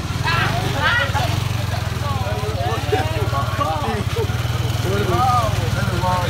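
Motor scooter engine idling, a steady low rumble.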